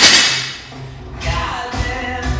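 An 85-lb barbell with rubber bumper plates, just dropped onto the rubber gym floor after a squat clean, its noise dying away in the first half second. Background music with a beat follows.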